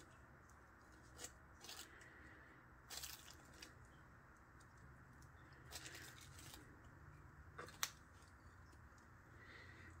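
Near silence broken by a few faint, short scrapes and clicks as a metal palette knife is swiped through wet acrylic paint across a canvas.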